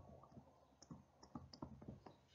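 Faint, irregular clicks of a stylus tapping on a tablet screen while handwriting.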